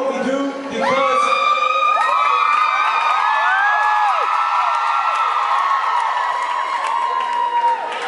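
Audience of fans cheering and screaming, many high-pitched voices holding long shrieks at once. It swells about a second in and carries on until near the end.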